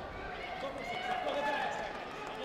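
Several overlapping, indistinct voices of spectators and coaches, with raised voices growing louder a second or so in.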